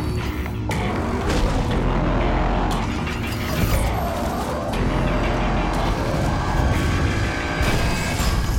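Film-trailer music score mixed with mechanical sound effects and booming impacts, the mix changing abruptly several times.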